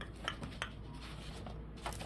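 A paperback coloring book being handled: faint paper rustles and a few light clicks.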